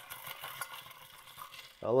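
Faint, even rustling of hands handling a water bottle, with a man's voice starting near the end.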